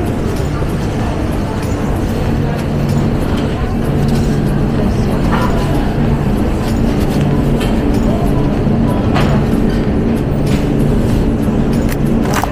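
Supermarket ambience: a steady low hum and rumble, with a few light clicks and rustles of the phone being handled.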